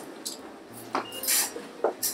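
A few short clinks and clatters of hard objects, with two sharp knocks, one in the middle and one near the end.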